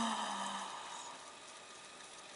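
A woman's held 'ooh' of delight, falling slightly in pitch and fading out within the first second, followed by quiet room tone.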